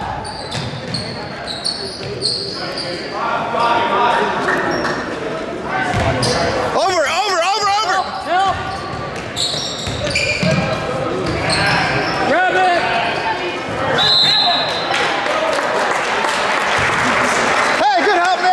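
Basketball game sounds on a hardwood court: the ball bouncing, sneakers squeaking, and shouts from players and crowd, echoing in the gym.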